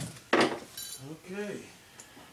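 Metal hand tools or bits clanking as they are picked through: one loud clank about a third of a second in, then a short metallic rattle.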